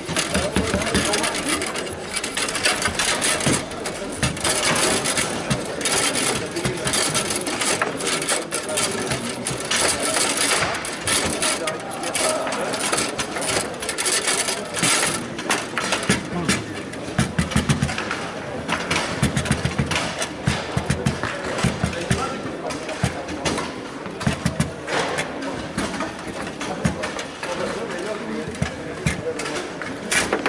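Foosball game in fast play: the ball is struck and rattles against the figures and the table walls, and rods clack and slide, giving a dense run of sharp knocks with heavier thuds in the second half.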